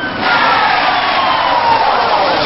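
Police siren sound effect, its wail gliding slowly down in pitch, over a loud steady hiss of noise.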